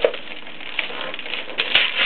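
Gift wrapping paper and packaging crinkling and rustling in short, irregular crackles as a toy is handled among it, loudest about a second and a half in.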